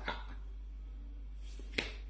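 A steady low hum in a pause, with one short, sharp click near the end.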